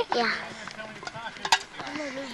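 People's voices calling and talking over a field, with one sharp clack about a second and a half in, typical of a wooden stick striking the can being knocked about by the players.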